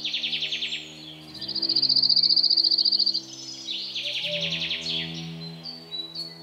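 High, rapid chirring trills from outdoor wildlife, loudest near the middle as one steady trill of about a dozen pulses a second, with shorter trills before and after. Low, sustained music notes run underneath.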